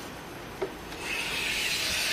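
A 42 mm Japanese kanna hand plane is pulled along a softwood board, its blade cutting a shaving. A short knock comes about half a second in, and a new planing stroke starts about a second in.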